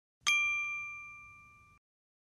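A single bright bell ding, the notification-bell sound effect of a subscribe-button animation, struck once and ringing with a few clear tones that fade away over about a second and a half.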